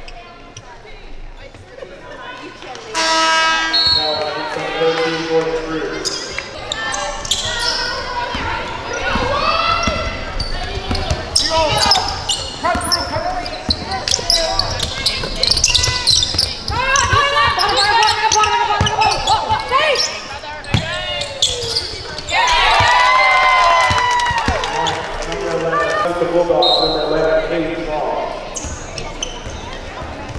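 Women's basketball game sound in an arena: a basketball bouncing on the hardwood court amid players' and bench voices calling out, with a quieter stretch in the first few seconds.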